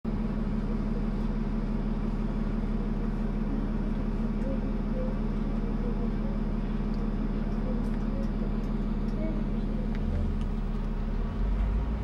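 Steady low drone of a double-decker bus's diesel engine heard from inside on the upper deck, with a deeper engine note coming in near the end. Faint voices of passengers murmur underneath.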